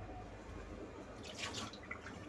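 Faint splash or dripping of water, a brief cluster of drops about a second in, over a low steady room hum.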